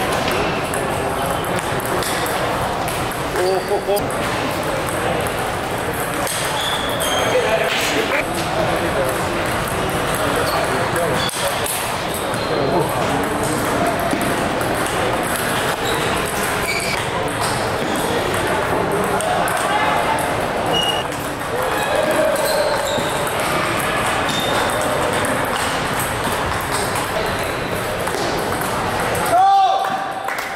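Table tennis balls ticking off bats and tables in a large, echoing hall, over a steady babble of many voices. A short, loud sound comes near the end.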